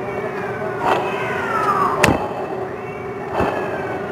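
A car's air-conditioning compressor pulley, spun by hand and freewheeling on its bearing, giving a whine that falls in pitch as it slows, over a steady hum; it is pushed again about two seconds in with a sharp click and the falling whine repeats. The noise marks a worn bearing inside the compressor pulley.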